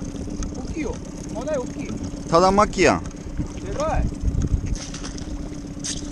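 Short spoken remarks in Japanese over a steady low hum, with a low rumble of wind on the microphone about four seconds in.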